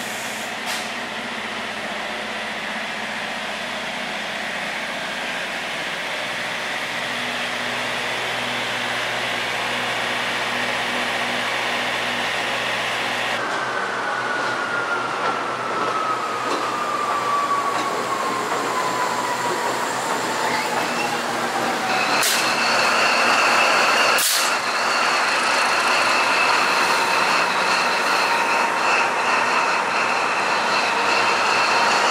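Railway station noise with a steady hum, then a diesel locomotive moving slowly along the track. A single whine falls slowly over several seconds, followed by two sharp knocks and steady high-pitched ringing tones.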